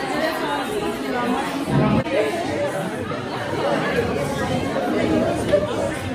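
Chatter of many people talking at once around restaurant tables, overlapping voices filling a large dining room.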